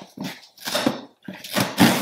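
Tear strip being ripped along a cardboard shipping box, in several short rasping tears of cardboard.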